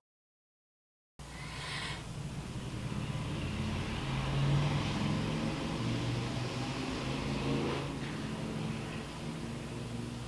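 A woman imitating a motorcycle engine with her voice: after a second of silence, a low, steady humming buzz comes in, swells in the middle and carries on.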